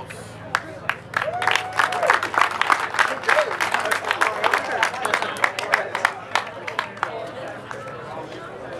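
Small crowd clapping and cheering for an award winner, with one held whoop about a second in; the clapping thins out near the end.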